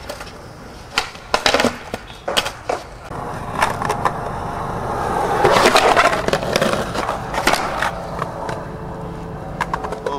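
Skateboard on concrete: a few sharp clacks of the tail popping and the board slapping down in the first seconds, then a long rough grind of the trucks scraping along a concrete edge, loudest around the middle, easing into wheels rolling with a few small clicks near the end.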